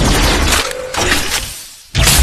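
Loud crashing, shattering sound effects with a deep bass rumble, laid over the stop-motion animation. They fall away briefly just before the end, then come back loud.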